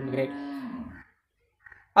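A man's voice drawing out a vowel for about a second, holding one pitch and then falling, followed by a short pause.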